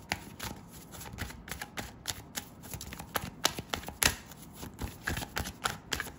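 A deck of oracle cards being shuffled by hand: a continuous, irregular run of sharp card clicks and flutters, with louder snaps now and then.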